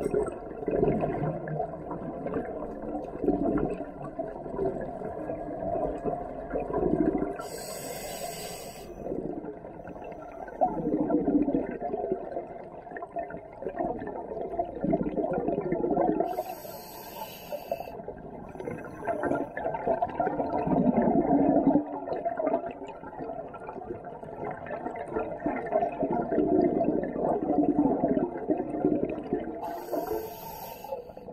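Muffled underwater sound of a scuba diver breathing through a regulator: exhaled bubbles gurgle out every few seconds, with a few short hissing inhales.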